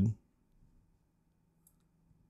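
Two faint computer mouse clicks about a second apart, in near quiet.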